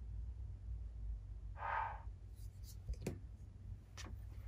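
Quiet handling at a craft table: a brief soft rustle a little before halfway, then two light clicks as paintbrushes are picked up, over a steady low hum.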